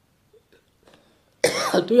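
Near silence, then about one and a half seconds in a man's voice breaks in abruptly with a short harsh burst and runs straight into speech.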